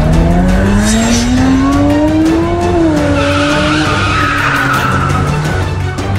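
A car engine revving, its pitch climbing steadily for the first few seconds, then tyres squealing for a couple of seconds as the car brakes, over background music.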